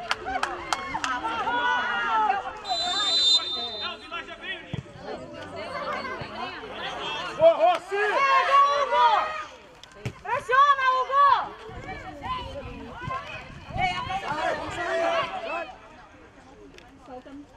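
Players and coaches shouting and calling out to each other during play, with a short, high whistle blast about three seconds in.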